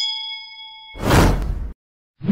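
A bright notification-bell 'ding' sound effect rings and fades over about a second. It is followed by a loud whoosh with a deep low end that cuts off sharply.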